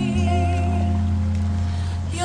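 Hawaiian song (mele): a singer's held note with vibrato fades out in the first second over steady, sustained backing chords and a low bass note.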